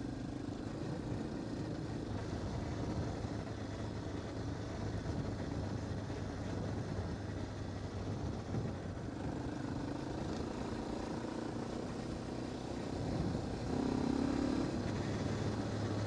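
Yamaha Warrior quad's engine running steadily as it cruises a dirt road, under rough noise from the tyres and wind. The engine picks up a little, growing louder, about thirteen seconds in.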